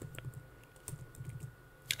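Faint, irregular clicking of computer keyboard keys, a few scattered clicks over a thin steady background whine.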